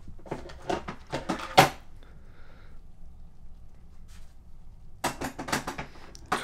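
Handling clatter in a hard plastic tool case: a quick run of clicks and knocks over the first second and a half, ending in one louder knock, then a quiet stretch and another dense burst of clicking near the end.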